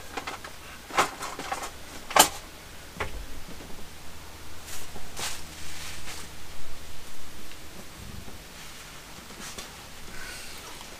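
Handling noise as clothing and stored items are sorted: a few sharp knocks and clatters, the loudest about two seconds in, then several seconds of rustling as t-shirts are gathered up.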